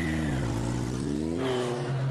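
Motor vehicle engine revving, its pitch falling over the first half second and then holding steady.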